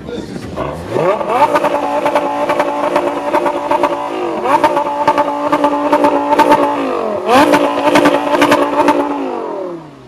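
Lamborghini Gallardo's V10 engine revved three times while parked. Each time it climbs quickly, holds steady at high revs for a couple of seconds, then drops back, and it settles toward idle near the end.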